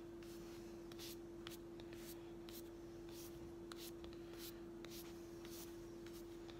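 Soft-bristled baby hairbrush stroking through a doll's hair: faint, scratchy brushing strokes about twice a second, over a steady low hum.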